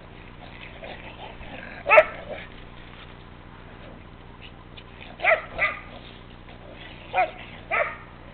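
Dog barking in play: five short barks, the loudest about two seconds in, then a quick pair a little past halfway and another pair near the end.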